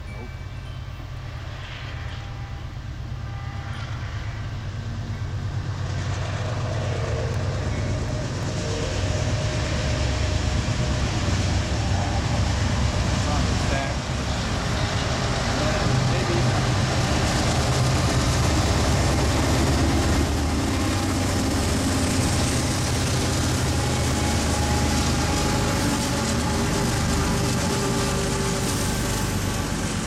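A BNSF freight train passing: three diesel locomotives come by running, followed by double-stack intermodal container cars rolling on the rails. The rumble builds from about six seconds in and stays loud from about nine seconds on.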